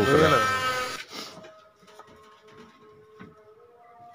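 A man's voice finishing a sentence in Hindi for about the first second. Then a faint background of steady held tones, with two soft taps.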